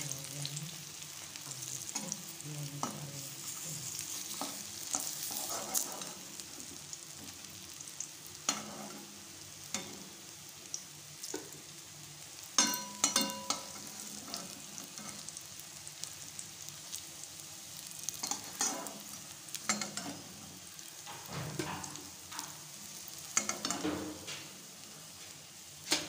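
Raw banana kofta balls sizzling steadily as they deep-fry in oil in a kadhai. A metal spatula scrapes and knocks against the pan from time to time, most sharply in a quick run of clicks about twelve to thirteen seconds in.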